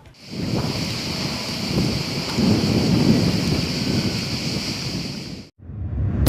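Storm sound: a steady hiss of heavy rain with low rumbling thunder, swelling in the middle and cutting off suddenly near the end.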